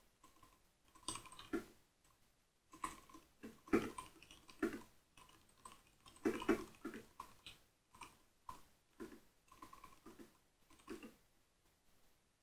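Typing on a computer keyboard: irregular runs of keystrokes with short pauses between words, stopping about a second before the end.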